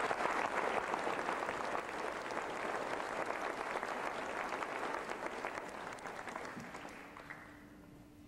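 Audience applauding, the clapping fading away over the last two seconds or so.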